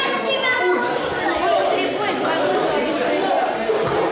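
Many voices talking over one another in a large gym hall: the chatter of a group of children and adults.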